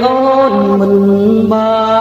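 Cambodian golden-age pop song: a melody of long held notes, each lasting about half a second to a second and stepping from one pitch to the next.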